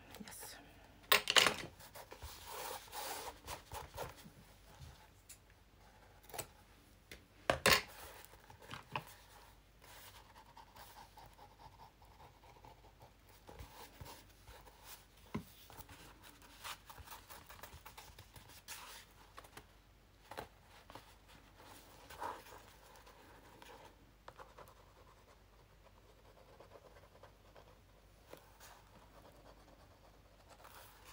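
Paper and fabric being handled and smoothed flat by hand: soft rustling and scratching, with a few sharp knocks, the loudest about a second in and just before eight seconds.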